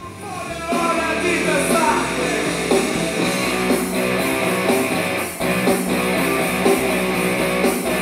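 Music streamed from a phone playing through a Google Home Mini smart speaker, its volume turned up about a second in and then holding steady.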